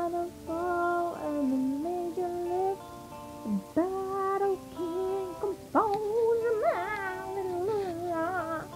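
A young woman singing a song unaccompanied, holding long notes and sliding between pitches, with a wavering vibrato on the notes in the second half.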